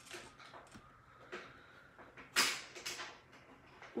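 Quiet rustling from fabric and thread being handled during hand-sewing, in a few short scratches, with one louder brief rustle a little over two seconds in.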